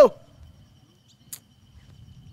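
A person's short exclamation "Oh", falling sharply in pitch, right at the start, then quiet background with a faint steady high tone and one brief sharp hiss just past halfway.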